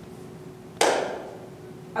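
A single sharp knock about a second in, the loudest sound here, fading quickly, over a faint steady hum.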